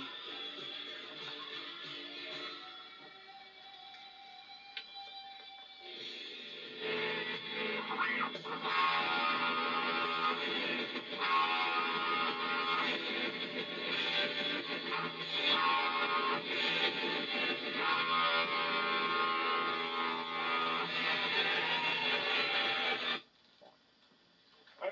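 Rock record playing on a turntable through a speaker, with distorted electric guitar. It is quieter at first, comes in fully about seven seconds in, and cuts off suddenly just before the end as the record is stopped.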